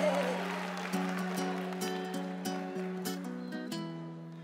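Acoustic guitar picking a slow run of single notes. Right at the start, a woman's held sung note glides down and fades out. The music grows steadily quieter.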